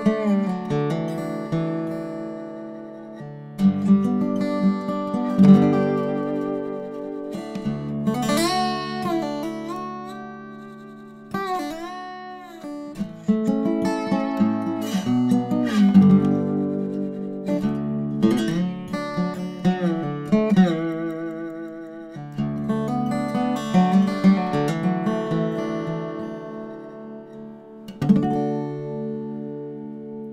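A 1920s Weissenborn hollow-neck acoustic lap slide guitar played quietly with fingerpicks and a metal bar: plucked notes and chords ring and fade, with the pitch gliding up and down as the bar slides along the strings.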